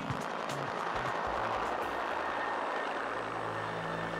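Helicopter in flight, a steady rush of turbine and rotor noise, with a low steady hum joining about three seconds in.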